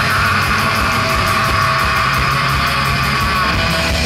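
Black/thrash metal band playing live: distorted guitars over fast, evenly repeating drumming, with a long held high note that fades near the end.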